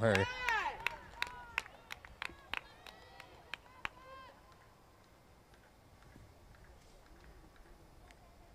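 Players' voices calling out across an open lacrosse field: short high-pitched shouts that rise and fall, mixed with a scatter of sharp clicks. The calls die away about halfway through, leaving only faint outdoor hush.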